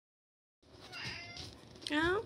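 Ginger tabby kitten meowing: a shorter call about a second in, then a louder meow near the end that rises and falls in pitch.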